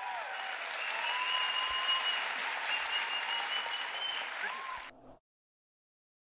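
Large theatre audience applauding, cut off abruptly about five seconds in.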